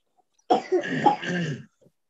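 A person coughing, starting about half a second in and lasting about a second.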